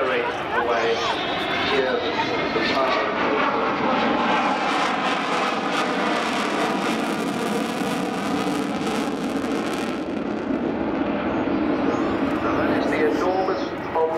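Avro Vulcan's four Rolls-Royce Olympus turbojets running as the big delta-wing bomber flies past overhead. The engine sound, with shifting tones, swells to its loudest in the middle and eases off after about ten seconds.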